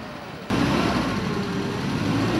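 Car engine revving hard while a wheel spins in loose snow. The loud noise starts abruptly about half a second in and holds steady: the car is stuck and slipping.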